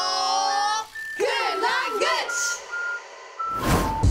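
A group of children shouting together in one long drawn-out cheer, then a few more shouted calls. A run of short, evenly spaced electronic beeps runs underneath, and near the end a loud swell with heavy bass comes in.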